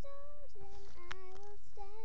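A young, high voice singing a slow melody of held notes, several notes in a row, each about half a second long.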